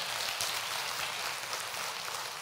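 Congregation applauding: an even, steady patter of clapping.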